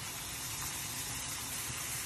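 Thin potato slices frying in hot oil in a stainless steel pan: a steady sizzling hiss.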